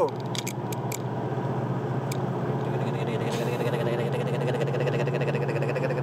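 Inside a moving car's cabin: steady engine drone and road noise while driving, with a few light clicks in the first second and another about two seconds in.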